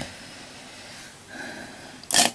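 Faint steady hiss of room tone, with a soft brief swell about a second and a half in.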